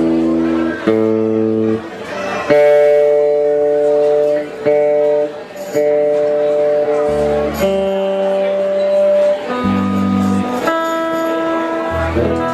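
A live band playing: electric guitars and keyboard holding chords that change every second or two, with a few sharp attacks between them.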